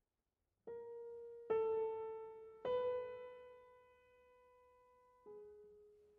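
Grand piano playing a slow, sparse passage of single notes. After a moment of silence, four separate notes are struck about a second or more apart, each left to ring and fade away; the third sustains the longest.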